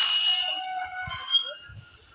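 A metal wire-mesh gate being pushed open: a high metallic squeal and ring that starts suddenly and fades out over about a second and a half.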